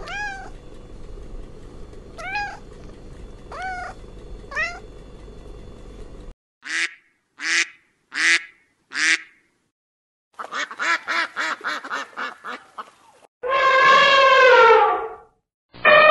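A cat meowing four times, then white domestic ducks quacking: four short quacks and then a quick run of about a dozen. Near the end comes one long, loud animal call that falls in pitch.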